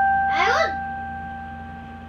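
An electronic keyboard's piano-voice note, struck just before, held and slowly fading during a pause in the playing. About half a second in, a brief vocal sound rises and falls over it.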